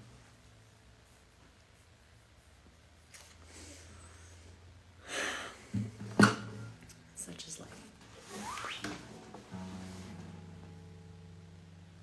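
Acoustic guitar being handled without playing: a few soft rustles and knocks, with one sharp knock on its body about six seconds in. Near the end its low strings ring on and slowly fade.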